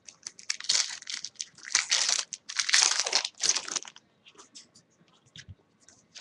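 A foil trading-card pack wrapper being torn open and crinkled in the hands, in several noisy bursts over about three seconds. It is followed by a few faint ticks as the cards are handled.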